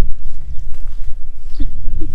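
Wind buffeting the microphone in a heavy low rumble, with a short bleat from a young lamb about one and a half seconds in.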